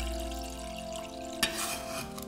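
Grapefruit juice poured into a heated stainless steel saucepan, a soft hiss of liquid meeting the pan, with a short light knock about one and a half seconds in.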